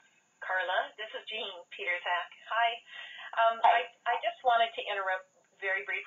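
A person speaking continuously over a telephone line, with thin, phone-quality sound.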